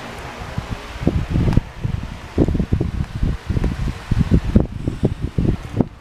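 Handling noise from a phone being moved around: rustling and irregular low thumps as its microphone brushes against bedding, starting about a second in.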